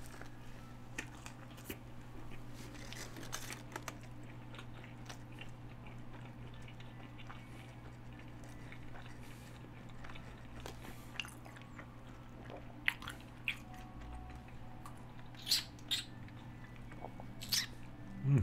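A man chewing a mouthful of steak Quesalupa, a chalupa with a soft, gummy cheese-infused shell: quiet wet mouth clicks and soft crunches, with a few sharper smacks in the second half. A steady low hum runs underneath.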